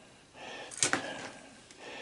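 Faint handling noise from a plastic bucket of refractory cement, with one sharp click just under a second in.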